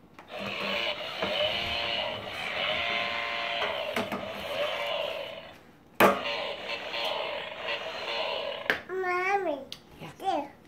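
Toy string trimmer's battery-powered motor and sound effect running in a steady buzz while the trigger is held, stopping briefly and starting again with a click about six seconds in. Near the end a toddler gives a short warbling vocal sound.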